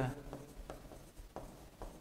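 Pen strokes on an interactive display screen while a word is handwritten: a few faint taps and short scratches, about four across two seconds, over quiet room tone.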